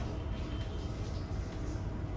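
Room tone: a steady low hum with no distinct sound events.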